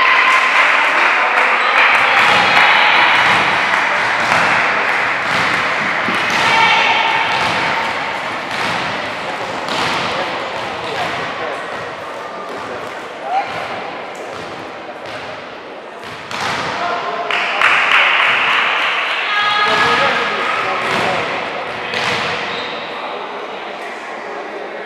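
Players and spectators calling and shouting in an echoing sports hall, with a volleyball being struck and thudding at intervals throughout.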